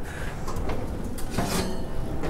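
Oven door of an electric range being pulled open: a few light knocks and handling noise, with a clunk of the door about one and a half seconds in.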